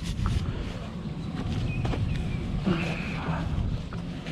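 A recovery strap and shackle being handled at a truck's hitch, with a few faint clicks, over a low steady rumble and a brief voice near the end.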